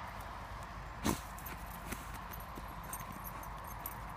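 A small dog digging in dry soil with its front paws: rapid scratching and scrabbling, with one louder brief burst about a second in.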